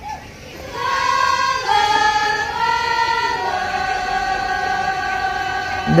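Women's voices of a qasidah rebana group singing long held notes that step from pitch to pitch, in maqam bayati, without drumming; the singing comes in a little under a second in.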